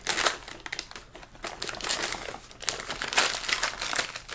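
Plastic soft-bait bag (Zoom worm packaging) crinkling in irregular crackles as it is handled.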